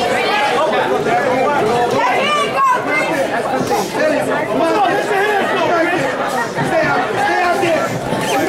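Many voices talking and calling out at once, overlapping into a steady chatter with no single clear speaker.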